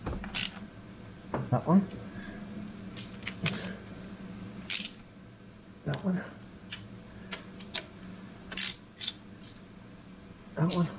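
Ratchet and socket tightening the rocker cover bolts on a Land Rover TD5 engine: irregular sharp metallic clicks and taps of the tool on the bolts, the cover bolts being brought to even tension over a rubber gasket.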